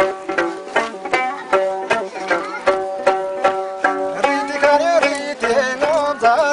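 Traditional Tibetan gorshay song from Dolpo: a melody held on steady notes with short slides between them, over a steady beat of sharp strikes about two to three a second.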